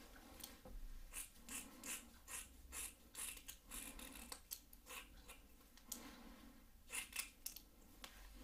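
Hair-cutting scissors snipping through a section of long hair held between the fingers: about a dozen short snips at an uneven pace, with two or three coming close together near the end.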